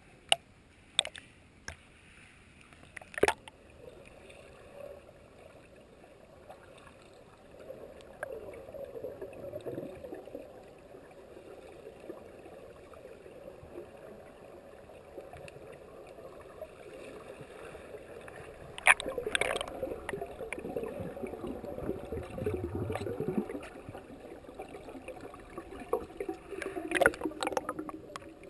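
Water heard through a submerged action camera's housing: a few sharp knocks in the first few seconds, then muffled underwater gurgling and sloshing that grows louder and busier about three-quarters of the way through.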